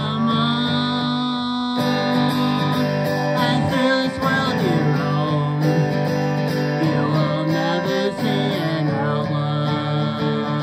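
A man singing a country-folk song and strumming his acoustic guitar in a live performance, the voice holding long notes and sliding between them.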